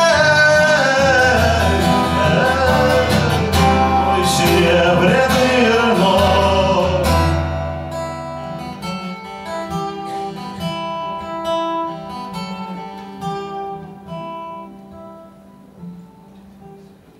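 A man sings to his own acoustic guitar accompaniment. About halfway through the voice stops, and the guitar plays a few picked notes alone that fade out as the song ends.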